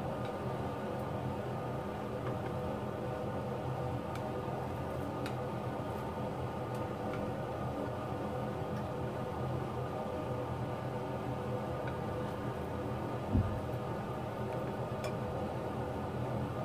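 Meatballs frying in butter and olive oil at medium heat, with faint scattered ticks of the fat over a steady hum. There is one short low knock about thirteen seconds in.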